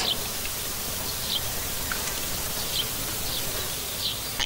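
Steady, hiss-like background ambience, with a few faint, short, high chirps scattered through it.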